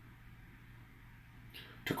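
Near silence: room tone with a faint steady low hum, then a man's voice starts again at the very end.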